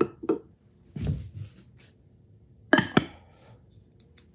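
A glass bell dome being handled and set onto its display base: a few light knocks and clicks, the loudest a sharp glassy clink about three-quarters of the way through.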